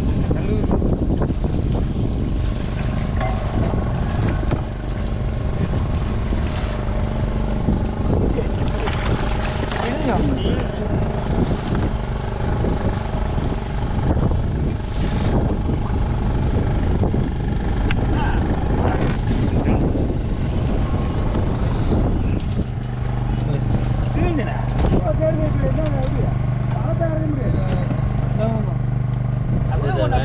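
A boat's motor running steadily, a low hum with a continuous rumble, joined by a few brief knocks; the hum grows stronger about three quarters of the way through. Voices are heard over it near the end.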